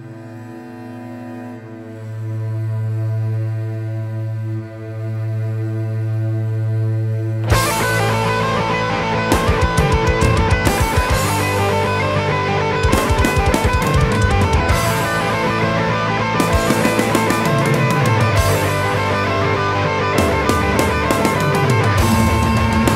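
Instrumental heavy/power metal passage: a sustained, droning chord for the first several seconds, then about seven and a half seconds in the full band comes in with distorted electric guitars and drums, including bursts of rapid kick-drum runs.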